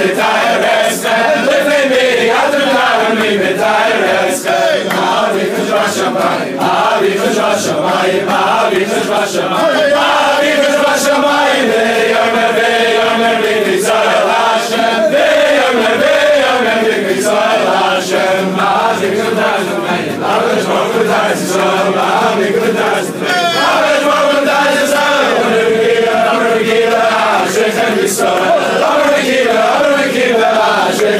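A large group of men singing a Jewish devotional song together in unison, loud and continuous.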